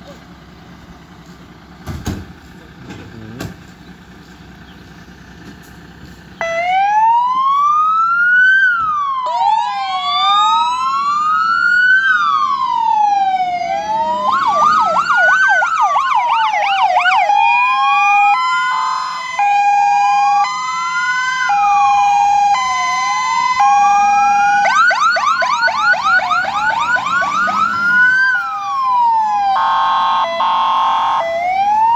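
Fire engine sirens on an emergency turnout. After about six seconds of low engine rumble with a few knocks, an electronic siren switches on suddenly. It cycles through a slow rising-and-falling wail, a fast yelp and an alternating two-tone hi-lo.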